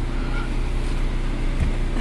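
Steady low rumble of a car's engine and road noise heard from inside the cabin, with a brief low thud about a second and a half in.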